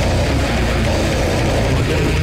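Deathcore / death metal playing: heavily distorted, low-tuned guitars over fast, dense drumming, loud and unbroken.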